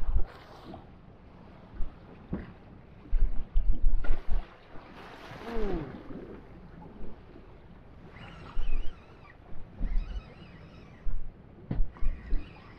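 Wind buffeting the microphone in gusts and waves slapping and rushing against the hull of a small drifting boat on a choppy sea, with a brief falling squeal about five seconds in.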